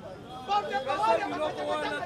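Several men's voices talking over one another: crowd chatter.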